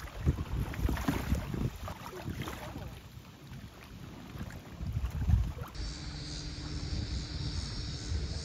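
Wind buffeting the microphone over rippling lake water, in uneven low gusts. A little after halfway the sound cuts to a steadier outdoor background with a faint, steady high-pitched hum.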